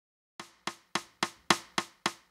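A steady percussive count-in of six evenly spaced clicks, about three and a half a second, the first one softer.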